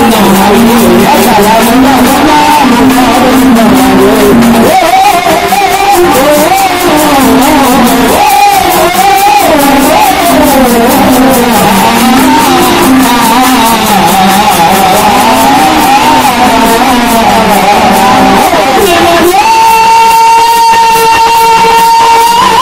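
A man sings a Telugu folk song loudly through a microphone and PA, over a steady drum beat. About three seconds before the end, the melody settles into one long held note.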